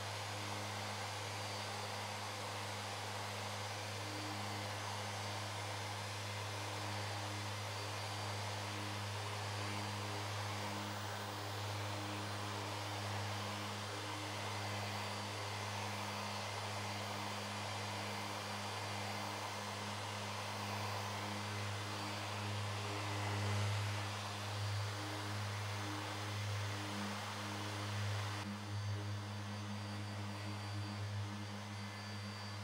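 Random orbital sander with a 5 mm orbit on a soft interface pad, hooked to a dust extractor, running steadily while sanding primer on a car roof. It gives a steady motor hum under the hiss of the abrasive, swelling a little near the end as the sander is swept across the panel.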